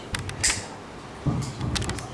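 Handling noise close to the microphone: sharp clicks and creaks in two clusters, one just after the start and another from about a second and a quarter in.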